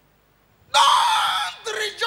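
Near silence, then about three-quarters of a second in a man's loud shout through a microphone and PA, followed by more excited preaching speech.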